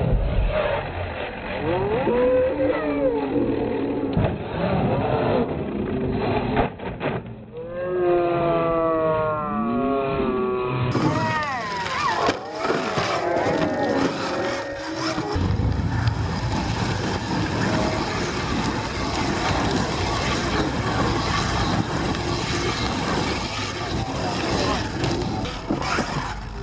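Electric R/C monster truck motors whining, rising and falling in pitch as the truck speeds up and slows on gravel, with a crowd chattering in the background.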